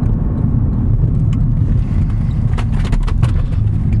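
Steady low rumble of a Porsche Panamera S E-Hybrid driving, heard from inside the cabin, with a few faint clicks after the middle.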